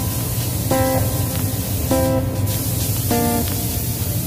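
Plucked guitar music, a chord about every second, over a steady hiss of compressed air from a paint spray gun.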